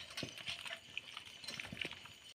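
Faint, scattered taps and scrapes of a wooden spatula stirring meat in a metal pot over a wood fire.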